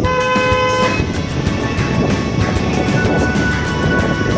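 A vehicle horn sounds once, a short steady toot of under a second at the start, over background music.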